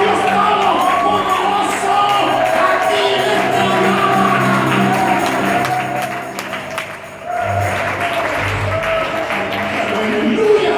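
Church worship music: voices singing over a band with a steady bass line. It briefly drops in level about seven seconds in, then carries on.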